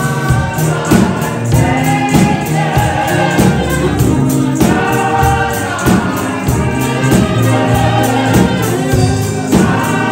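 A gospel praise team of several voices singing into microphones, with a tambourine keeping a steady beat.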